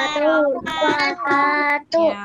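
A child's voice chanting the Islamic closing greeting "Assalamualaikum warahmatullahi wabarakatuh" in a drawn-out sing-song melody, breaking off briefly just before the end.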